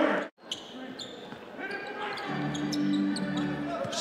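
Live basketball game sound in an arena: a ball bouncing on the hardwood court and short high squeaks of sneakers. The sound cuts out for a moment near the start, and a steady low held tone of arena music comes in a little past halfway.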